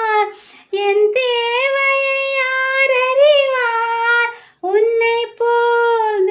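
A woman singing a Tamil song unaccompanied in a high voice, holding long notes, with short pauses for breath about half a second in and again near four and a half seconds.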